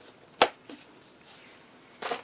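A single sharp knock about half a second in, with a faint tap just after it: a book being set down on a table.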